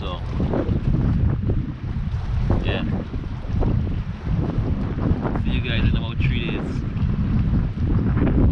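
Wind buffeting an outdoor microphone: a heavy, uneven low rumble, with a few brief high-pitched sounds about three seconds in and again around six seconds in.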